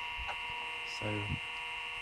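Steady electrical hum and whine of a Seagate ST-4038 MFM hard drive spinning during a low-level format, together with the open PC it sits on. The drive runs quietly, without bearing noise.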